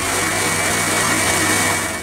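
Electric mixer grinder (mixie) running steadily, its steel jar grinding a cooked onion-tomato masala into paste. The motor cuts off at the end.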